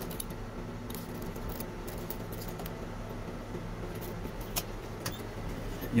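Soft handling sounds from folded curtain fabric and a tape measure on a cutting table: a few scattered light clicks and rustles over a steady low hum.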